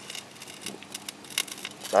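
Shallow creek water trickling, with scattered small crackles and clicks.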